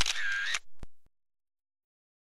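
Camera shutter sound: a sharp click, a half-second mechanical shutter burst, then two short clicks about a second in, marking a change of photo in the slideshow.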